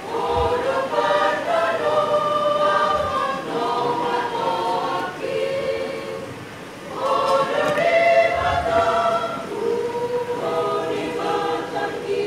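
Church choir singing in several voices, held notes phrase after phrase, dipping in loudness about six seconds in before swelling again.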